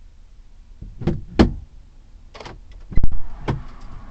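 A handful of short knocks and clicks, about five in under three seconds. The loudest is a heavy thump about three seconds in.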